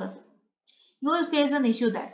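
A lecturer's voice talking, with a pause of about a second near the start broken by one brief, faint click, then speech again.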